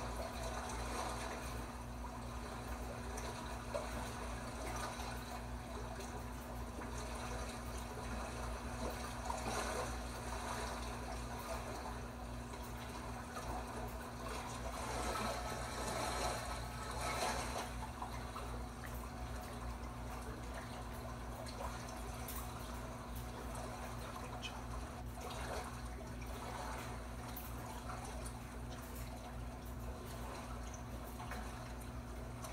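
Water trickling and bubbling steadily from an aquarium video playing on a TV, with a steady low hum underneath.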